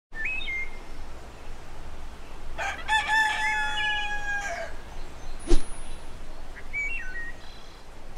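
Rooster crowing once, a long stepped call about two and a half seconds in, with short bird calls before and after it. A single sharp sound halfway through, the loudest moment, cuts across over a steady background hiss.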